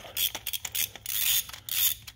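A spark plug being turned loose with a spark plug tool in a BMW B58 cylinder head: several quick clicks, then a rasping, creaking scrape as the plug unscrews.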